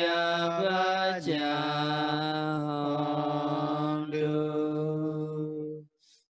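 A Buddhist monk chanting in long drawn-out notes: one held tone drops a step in pitch about a second in, is held steadily for several seconds, and stops just before the end.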